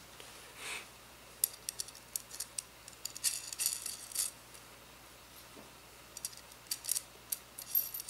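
Small steel M8 washers and nuts clinking against a steel threaded rod and each other as they are handled and fitted. Short runs of sharp, light metallic clicks come in two spells, one from about one and a half to four seconds in and another near the end.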